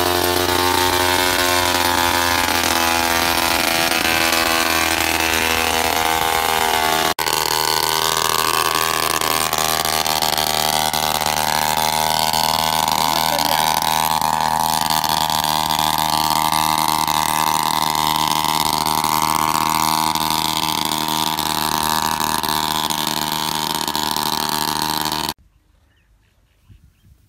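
Backpack motorized mist-blower sprayer's small two-stroke engine running steadily as it blows spray over the crop. There is a brief break about seven seconds in, and the sound cuts off suddenly near the end.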